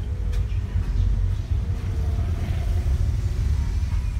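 A Toyota car's engine and road rumble heard from inside the cabin while it drives slowly, a steady low rumble with a faint hum above it.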